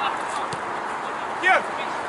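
A football player's short shout of "Yeah!" about one and a half seconds in, over steady outdoor background noise.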